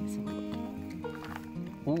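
Background music with sustained, stepping tones, over which a porcini (Boletus edulis) is pulled from the pine-needle litter with a crunch.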